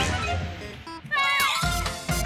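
Cartoon background music with a cartoon cat's short, meow-like vocal cries over it. The cries come after a brief dip in the music, about a second in.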